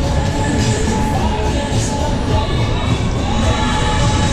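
A waltzer ride running at speed: a loud, steady low rumble of the cars travelling round the undulating track, with fairground music and riders' shouts mixed in.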